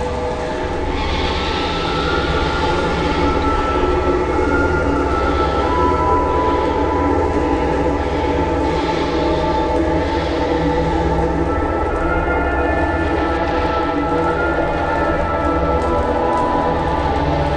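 Background drama score of sustained, droning tones held steadily over a constant low rumble.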